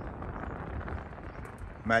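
Faint, steady background noise in a pause between phrases of a man's talk, which starts again just at the end.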